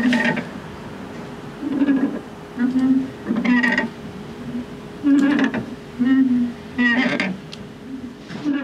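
A person's voice in short, indistinct phrases, over a faint steady hum.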